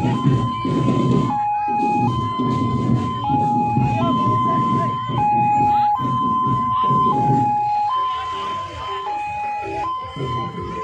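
Two-tone hi-lo siren, most likely on a tourist road train, steadily switching between a higher and a lower tone about once every two seconds. Loud crowd noise underneath thins out near the end.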